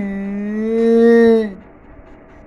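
A long, low vocal call held on one steady pitch for about a second and a half, swelling a little before it stops.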